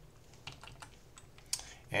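A handful of separate clicks from a computer keyboard and mouse as commands are entered, the sharpest a little past halfway.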